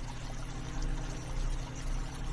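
Small stream of water pouring and splashing over rocks, a steady rushing with a low rumble beneath.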